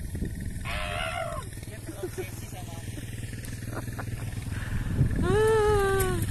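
A steady low engine hum with people's voices over it: a short spoken burst about a second in, and a long drawn-out vocal call near the end.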